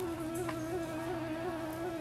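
A steady droning tone with a regular slight waver in pitch, with a second, higher wavering tone above it.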